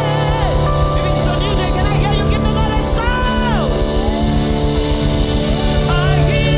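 Live gospel music: held chords over a steady bass, with a singer's voice sliding down in falling runs near the start and again, longest, about three seconds in.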